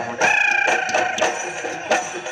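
Bihu dance music with dhol drumbeats. A long, high, held note sounds over the drums in the first half.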